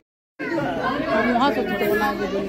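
Several people chatting at once in a large hall, voices overlapping. It opens with a split second of total silence at an edit cut.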